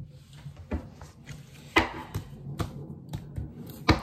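Tarot cards being handled on a table: a few sharp taps and slaps, a loud one about two seconds in and the loudest just before the end, over a low steady hum.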